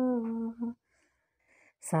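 A lone voice singing unaccompanied, holding the last note of a line in a Hindi film song; it stops under a second in, leaving a silent gap, and the next line begins near the end.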